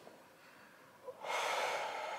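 A man breathing out hard and long, a breathy hiss that starts about a second in and slowly trails off: the full exhale that empties the lungs before the stomach is drawn in for a hypopressive exercise.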